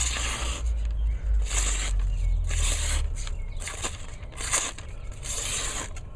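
Serrated edge of a Spyderco Delica 4 knife slicing through a hand-held sheet of notebook paper, about six short cutting strokes roughly a second apart, over a steady low hum.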